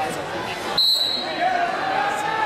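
A referee's whistle: one short, high blast about a second in, over crowd voices in a gym. It stops the wrestling action.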